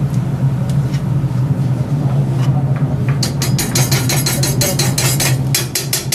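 A spoon clicking and scraping rapidly on stainless-steel and copper cookware, starting about halfway in, as butter is scooped into a hammered copper pan. Under it runs the steady low drone of a commercial kitchen's exhaust hood and gas burner.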